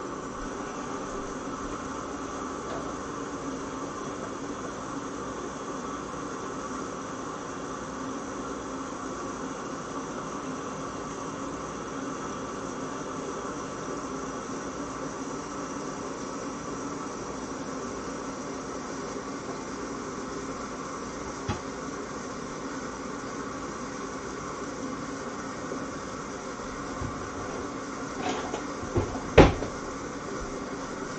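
A steady mechanical hum runs throughout. A few sharp knocks come near the end, the loudest just before it ends.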